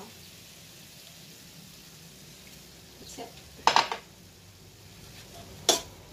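Minced beef sizzling gently in a stainless steel frying pan, with a metal spoon clanking sharply against the pan twice, a little before four seconds in and again near the end.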